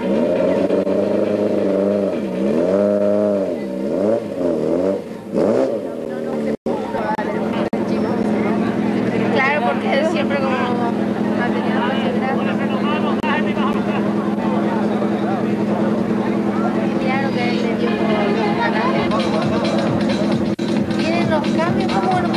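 Seat Ibiza rally car's engine revved in a series of rising and falling throttle blips for about the first six seconds, then held at steady revs.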